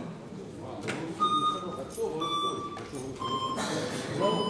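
Electronic voting system beeping about once a second during a timed vote, three short beeps, each a little lower in pitch than the last, over indistinct voices in the hall.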